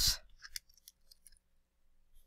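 The end of a spoken word, then a few faint, short clicks from a stylus on a digital writing tablet, at most about a second in.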